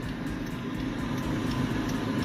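Steady low background hum with a faint held tone underneath; no distinct knocks, clicks or other events stand out.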